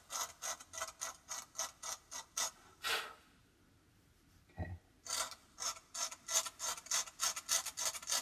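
A pointed tool scratching short, repeated strokes into painted Arches cold-pressed watercolour paper, about four scrapes a second, lifting paint to leave fine, crisp white lines. The scratching stops for about a second and a half in the middle, then starts again.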